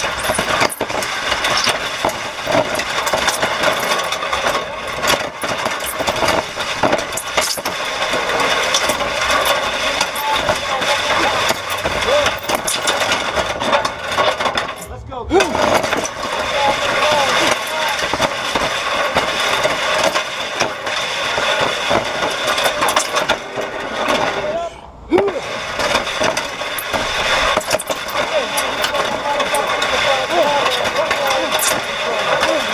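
Steel push-sled (prowler) skids scraping and grinding continuously over asphalt as the sled is driven along, with two short breaks about halfway through and again near the end where the sled stops and turns.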